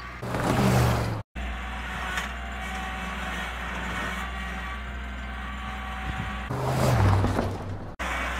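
Kubota L3901 compact tractor's three-cylinder diesel engine running steadily as it works in snow, with louder spells near the start and near the end. The sound drops out completely for an instant about a second in.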